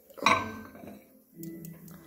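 Glass bowl set down on a microwave's glass turntable: one sharp clink with a short ring, followed by a few light clicks about a second and a half in.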